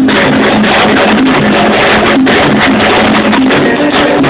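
A live salsa band playing, loud and continuous.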